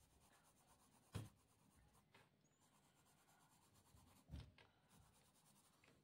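Graphite pencil shading on paper, a very faint scratching, with two brief soft knocks, about a second in and again past four seconds.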